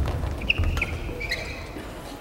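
Court shoes squeaking briefly on the badminton court floor, three or four short squeaks, with a single sharp tap about half a second in, over the low rumble of the hall.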